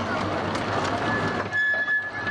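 Open carriages of a miniature railway rolling past close by, steel wheels running steadily on the track. A thin, steady high squeal joins in about a second in as the train rounds the curve.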